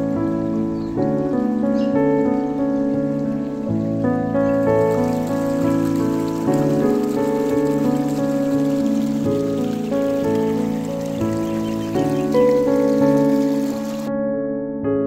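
Soft piano background music. About four seconds in, a steady rushing hiss of shallow river water running between boulders joins the music, and it cuts off abruptly at the end.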